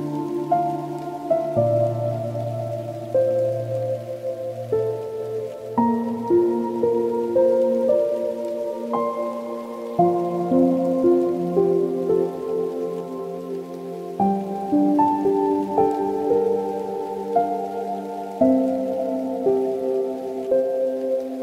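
Soft, slow solo piano music: held notes and chords that start crisply and fade, a new note or chord every second or so.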